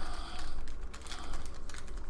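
Small clear plastic bag of spare parts being handled and opened by hand: light crinkling of the plastic with many quick, irregular small clicks.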